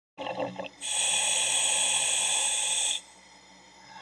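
Diver breathing in through a demand regulator: a steady hiss of about two seconds that cuts off sharply, heard over the diver communication line.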